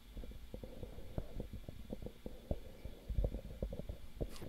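Rapid, faint plastic clicking and clacking of 3x3 speedcubes being turned fast during a solve, over a low rumble.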